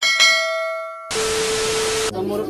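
A notification-bell chime sound effect rings and fades. About a second in it gives way to a burst of television static with a steady hum.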